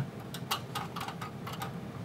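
A series of faint, light clicks and taps from a small flat-blade screwdriver being set against and pressing the spring-clip release of a DVR's push-in wire terminal.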